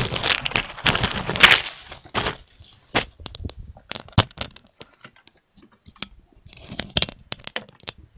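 Crackling and irregular sharp clicks on an online video call's audio line, after about two seconds of loud rushing noise, with a small cluster of clicks near the end.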